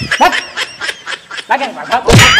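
Snickering laughter in short, broken bursts, with a few sharp clicks among them.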